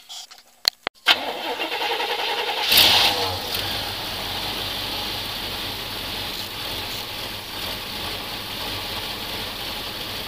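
A 454 big-block V8 in a GMC 3500 truck, with a valve cover off, is cranked and starts about a second in after a couple of clicks. It rises to a brief rev near three seconds, then settles to a steady idle, running a little choppy.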